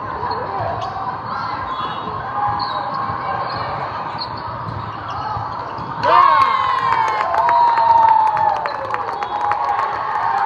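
Indoor volleyball in a large, echoing hall: steady crowd chatter with shoe squeaks and ball contacts, then about six seconds in a sudden burst of shouting and cheering with clapping as a point ends.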